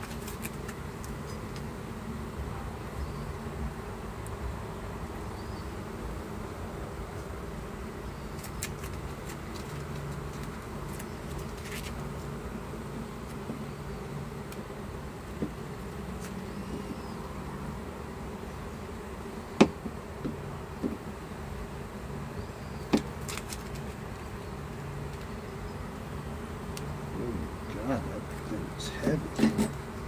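Honeybees buzzing steadily around an opened hive box. A few sharp clicks of the metal hive tool against the wooden frames, the loudest about two-thirds through.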